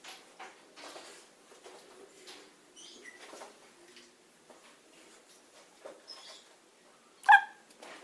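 Faint scattered rustles and small knocks, then a dog gives one short, high-pitched yip near the end.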